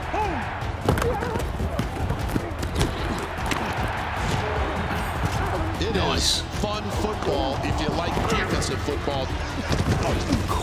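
American-football highlight-reel soundtrack: a dramatic music score under voices of players and coaches shouting, with an occasional thud, the sharpest about a second in.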